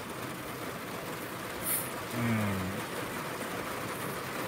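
Steady rain, an even hiss. A short hummed vocal sound, falling in pitch, comes a little past two seconds in.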